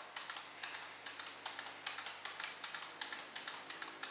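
Computer keyboard keys tapped in a quick, even run of about five clicks a second: single digits and the Enter key typed over and over to answer a program's input prompts.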